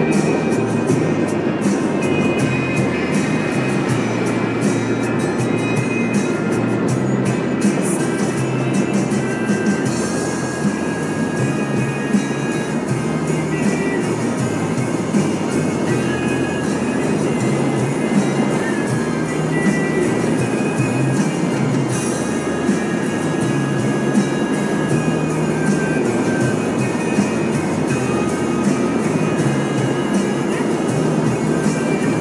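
Internet radio playing music through the car stereo inside a moving car's cabin, over steady road and tyre noise.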